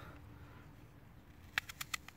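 Knife cutting into a crisp Honeycrisp apple: a rapid run of about five sharp crunching cracks in the last half second, after a quiet start.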